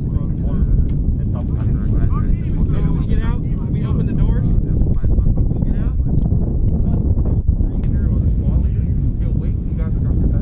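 Steady low wind rumble buffeting the microphone, with indistinct talking over it.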